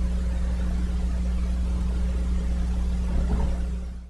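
Steady low hum with a few even pitches and a faint hiss, fading out near the end.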